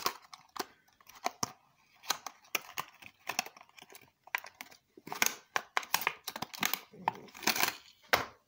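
Thin clear plastic bag crinkling and rustling in irregular bursts as a small diecast model car is unwrapped from it by hand.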